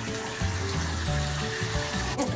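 Water running steadily into a bathtub, a hiss that stops near the end, with background music underneath.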